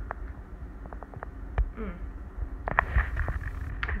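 A woman drinking a thick green smoothie from a glass: a few small clicks and sipping sounds, then a short appreciative "mm" about halfway through. A low rumble from handling of the handheld camera runs underneath.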